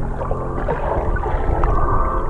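Background music heard muffled, as if underwater, with steady low held notes and the highs cut away.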